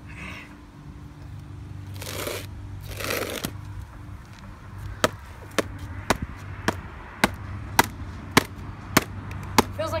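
A hammer striking the closed lid of a white plastic MacBook in quick, light, regular blows, about two a second, from about halfway in. Before that, two brief scraping noises.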